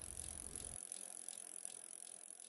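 Faint bicycle sound effect, the ticking of a freewheel ratchet as the bike rolls, fading out.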